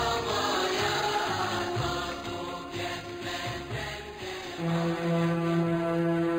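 Instrumental introduction of a Turkish pop song, with held tones over low beats. A strong held low note comes in about two-thirds of the way through.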